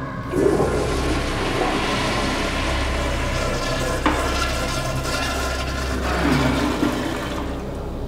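Commercial flush-valve (flushometer) toilet flushing: a steady rush of water lasting about seven seconds, with a sharp click about halfway through, cutting off near the end.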